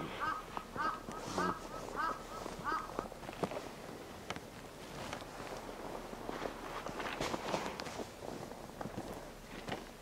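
A bird calling in a run of about seven short, even calls, about two a second, over the first three seconds. After that, faint scattered scuffs and crunches in snow.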